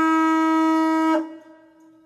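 A single held horn-like wind-instrument note, steady in pitch, that stops about a second in and trails off in a fading echo.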